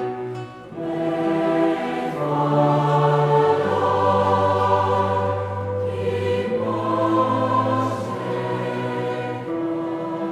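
Choir singing a slow Taizé chant in held chords that change every second or two, with a brief pause between phrases about half a second in.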